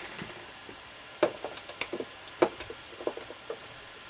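Painting supplies being handled on a tabletop: a scattered series of light clicks and knocks, the loudest about a second in and near the middle.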